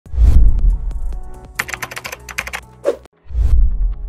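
Intro sound effects: a deep booming hit, then a quick run of keyboard-typing clicks, a short swell that cuts off abruptly, and a second deep boom near the end.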